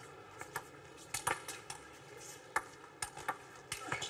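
Table tennis rally: the ball ticking off the rackets and the table in a quick, irregular series of sharp clicks, a few every second.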